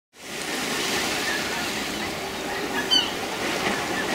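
Seaside harbour ambience: distant crowd chatter over the steady wash of the sea, with one short, high gull call about three seconds in.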